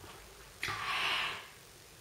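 A woman drawing a breath: a soft, airy intake starting just over half a second in and fading within about a second.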